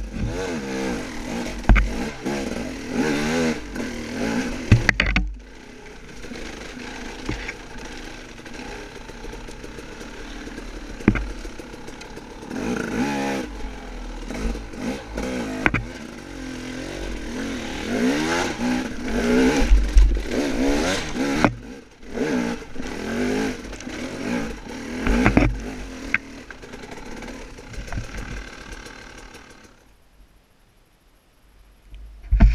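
Dirt bike engine revving up and down in short bursts as it is ridden over a rough woods trail, with clatter and knocks from the bike. It drops to a low, steady run about five seconds in, picks up with more throttle blips later, and dies away near the end.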